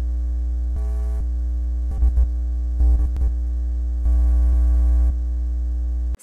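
Loud, deep electrical mains hum with a steady buzz of overtones, broken by crackles of static and a few louder surges.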